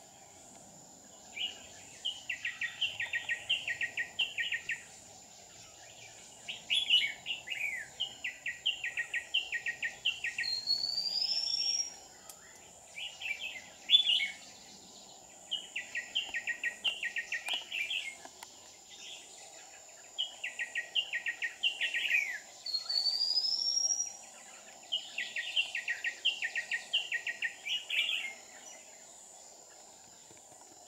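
Red-whiskered bulbul song: repeated bouts of quick, bright chirps a few seconds long, with short pauses between them, and a rising whistled note twice.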